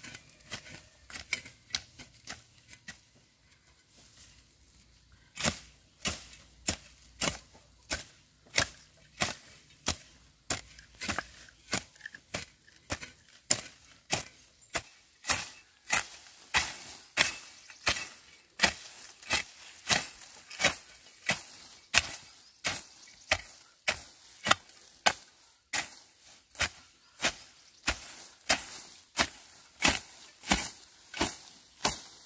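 Hand hoe striking soil and sweet potato vines, stroke after stroke. The blows are sparse for the first few seconds, then settle into a steady rhythm of about one and a half a second.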